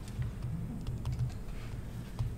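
Stylus tapping and sliding on a tablet screen during handwriting: a run of soft, irregular taps, several a second.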